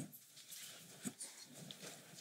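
Near silence during a pause in speech: faint studio room tone with one small click about a second in.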